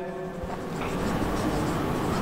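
Marker pen scratching across a whiteboard as a word is written by hand.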